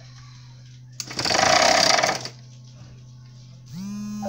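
Small 12 V DC motor of a homemade spool winder switched on briefly, spinning the string spool with a loud whir for just over a second before stopping, over a steady low hum. Near the end a rising electronic tone starts and settles into a steady buzz.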